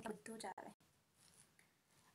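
A woman's voice speaking for a moment, then near silence with only faint room noise.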